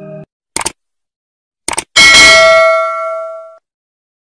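Subscribe-button sound effect: two short clicks, then a bright bell-like ding about two seconds in that rings on and fades out over about a second and a half.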